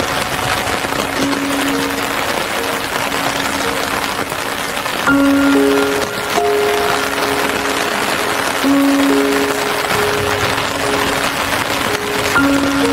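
Slow, calm music of long held notes, a new note every second or two, over a steady hiss of rain.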